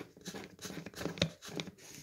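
Light scratching and small clicks of a reverse-thread screw being turned by the fingers into the threaded output shaft of a cordless drill transmission, with one sharper click a little past halfway.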